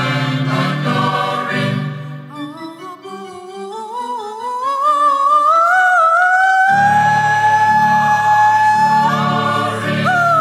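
A woman soloist and a classical church choir singing. The choir holds a chord at first, then her voice climbs slowly with vibrato onto a long held high note on "Above", and about seven seconds in the choir comes back in with a sustained chord beneath her.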